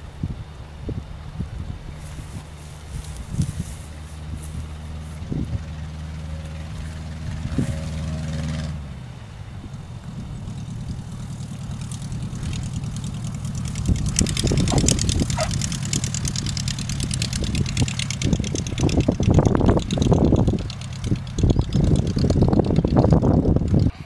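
A Baby Ace light aircraft's piston engine running steadily at idle. About nine seconds in, the steady tone gives way to a louder rushing noise that swells and comes in gusts over the last ten seconds.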